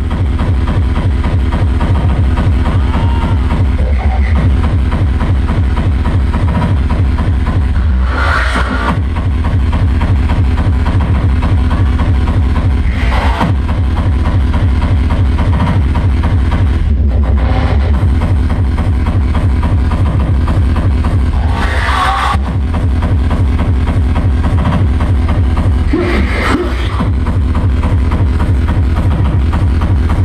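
Loud hardcore electronic dance music (frenchcore) played live over a large PA system: a heavy, driving bass-drum beat that carries on without a break, with short rushing noise sweeps about a quarter of the way in, again about a third of the way in, and twice in the last third.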